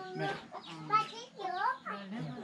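People talking, a child's voice among them, with chickens clucking.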